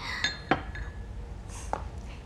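Porcelain bowls and dishes clinking as they are set on a table: three light knocks with a short ring in the first half-second, and a softer one near the end.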